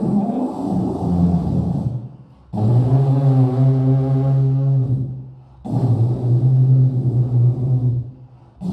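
A man beatboxing into a handheld microphone cupped in his hands, making a deep, loud droning hum rather than beats: three long held low notes, each two to three seconds, with short breaks between.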